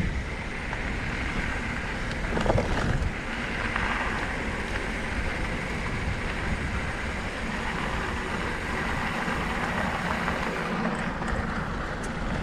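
Wind rushing over the microphone of a camera on a mountain bike, with the tyres rolling over a dirt singletrack. It stays steady throughout and grows briefly louder about two and a half seconds in.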